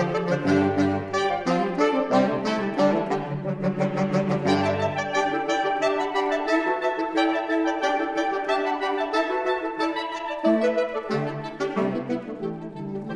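Saxophone quartet playing classical music, several parts moving quickly together in harmony. The low bass notes drop out for a few seconds in the middle and come back near the end.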